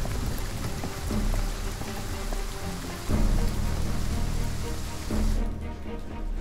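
Steady hiss of rain laid over background music of sustained low chords that shift every second or two. The rain sound stops abruptly a little before the end.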